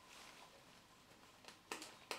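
Near silence, with a few faint clicks near the end from a small hex key working a stripped screw in a metal phone case.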